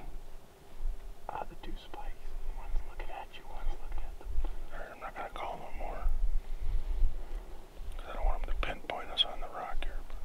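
A man whispering in a few short bursts over a steady low rumble on the microphone.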